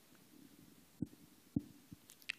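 Quiet hall with a faint low hum, then two soft, low thuds about half a second apart, a second in, followed by a fainter third.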